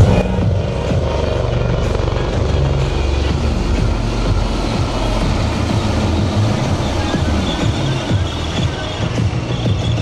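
HAL Dhruv helicopters passing in formation, their rotors making a rapid, steady chop under background music.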